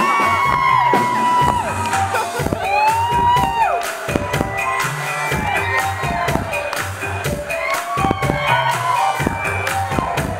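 Synth-pop band playing live at full volume with a steady drum beat, with audience whoops and cheers rising over the music.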